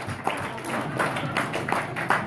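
Guests applauding: many hands clapping at once in a dense, irregular patter.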